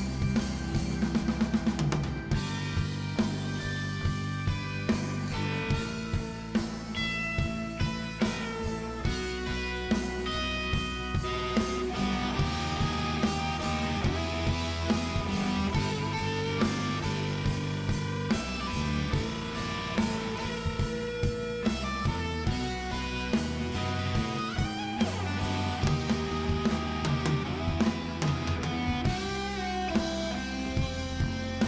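Rock band playing an instrumental passage live: electric guitar over bass guitar, keyboards and a drum kit keeping a steady beat, with a quick drum fill about a second in.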